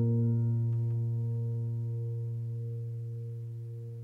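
Background piano music: one low chord held and slowly fading, cut off suddenly at the very end.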